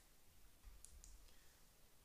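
Near silence with a few faint, short clicks from handling a box-mod vape device.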